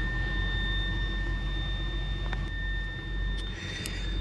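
A steady, high-pitched whistle inside the cabin of a 2016 Nissan X-Trail Hybrid: one unchanging pitch with a fainter one above it, over a low steady hum. The whistle never goes away; the car has a brake fault with stored pump-motor and accumulator-pressure codes.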